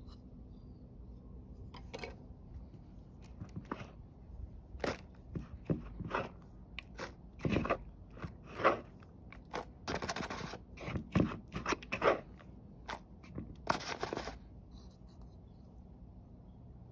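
A hand raking and digging through loose potting soil in a clay pot: irregular crunching and scraping strokes, with a couple of longer rustling sweeps about ten and fourteen seconds in.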